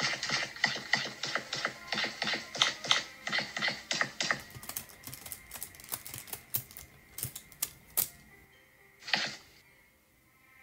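A rapid run of clicks like typing on a keyboard, about four or five a second, for the first four seconds or so. Sparser, sharper clicks follow until about eight seconds in, then a short burst near the end.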